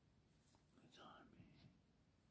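A person's faint whispered voice, about a second long, in near silence.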